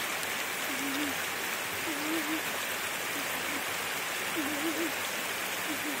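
Steady rushing noise of flowing water, even throughout, with a few faint, brief wavering tones over it.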